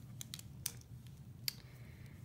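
Light clicks and taps of plastic multi-pen barrels being handled, a scatter of small clicks with two sharper ones a little under a second apart.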